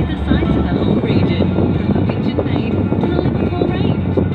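A car radio playing music and a voice over the steady road and engine rumble inside a moving car.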